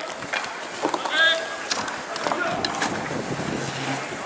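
Inline hockey play: hockey sticks clacking against the ball and each other several times, and skate wheels rolling on the rink surface. A short shout comes about a second in, and wind noise on the microphone runs underneath.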